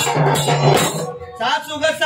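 Devotional Khandoba song music with jingling, rattling percussion, which thins out and drops away about a second in. A voice then comes in with long held notes.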